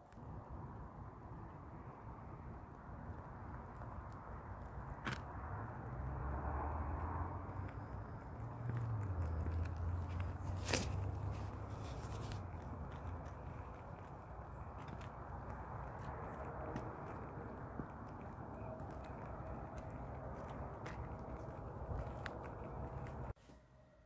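Faint outdoor background with a low rumble that swells in the middle and scattered light clicks and scrapes. It cuts out just before the end.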